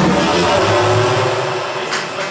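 Rock band playing loud and live, with a dense, sustained distorted-guitar and bass sound and a cymbal hit near the end.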